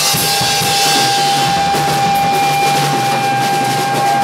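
Rock band playing live, with the drum kit and cymbals to the fore and one high note held steady.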